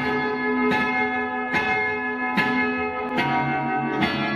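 Acoustic guitar strummed, each chord left ringing, with a fresh strum about every second. The bass notes shift to a new chord near the end.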